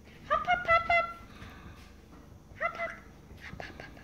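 White-headed caique calling: a quick run of about four short, steady-pitched calls, then a shorter double call about two seconds later, with a few light clicks near the end.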